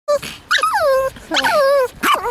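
Small dogs whining: a short note, then two long whines that each slide down in pitch. The owner takes the whining for the dogs wanting their ball thrown.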